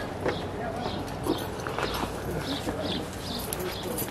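Footsteps tapping on a hard surface as people walk, with indistinct voices in the background.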